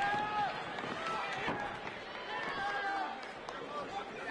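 Men's voices shouting from the crowd and corners during a cage fight, several calls held long, over steady crowd noise, with a few faint sharp knocks.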